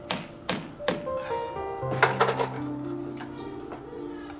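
A chisel struck by a rubber-headed mallet against a carved grey wall plaque: three separate sharp taps in the first second, then a quick run of four about two seconds in. Background music with sustained notes plays throughout.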